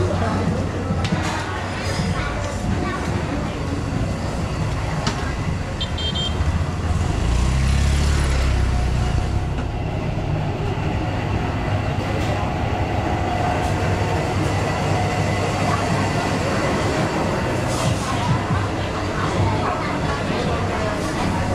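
Street ambience of background chatter and motorbike traffic, with a louder low rumble of a passing vehicle from about seven to nine seconds in.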